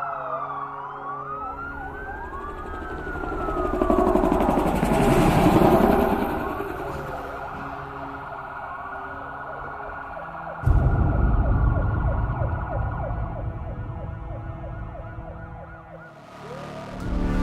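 Sirens wailing in slow rising and falling glides over a sustained drone, swelling to a peak about five seconds in. About two-thirds of the way through, a sudden deep hit starts a low rumble that fades away.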